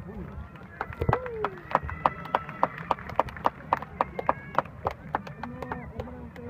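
Fans in the stands clapping in a steady rhythm, about three claps a second, with voices chanting and shouting between the claps: a baseball cheering section.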